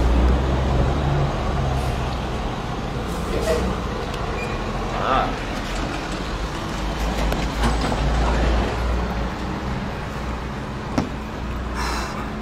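Road traffic passing a roadside stop: low engine and tyre rumble that swells at the start and again in the middle as vehicles go by, with faint voices.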